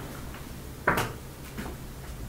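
A short clack about a second in, with a fainter knock later, as a whiteboard eraser and marker are handled at the board.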